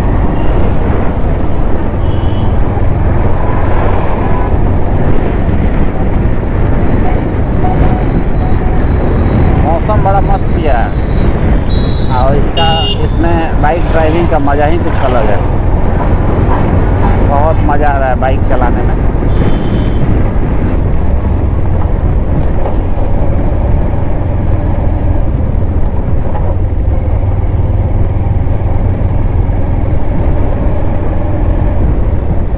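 Steady low rumble of road and wind noise from a vehicle driving along a busy road, with passing traffic. Voices and brief higher tones come through between about ten and nineteen seconds in.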